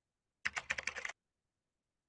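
Computer keyboard typing: a quick run of about ten keystroke clicks, starting about half a second in and lasting under a second.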